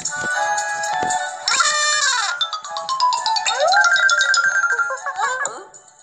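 Playful cartoon music and sound effects from a children's Bible story app: bright plinking notes, with a sliding tone falling in the middle and another rising shortly after. The sound fades out just before the end.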